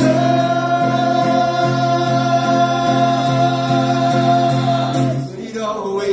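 Live acoustic band: a singer holds one long sung note for about five seconds over acoustic guitar chords, the note easing off near the end.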